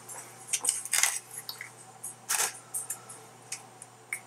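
Kitchen handling noises: about four short crinkly, hissy bursts as a foil-lined baking sheet and a plastic-wrapped salmon tray are handled.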